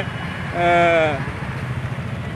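Steady low rumble of passing road traffic, with one drawn-out voice sound held for under a second near the middle that sags in pitch as it ends.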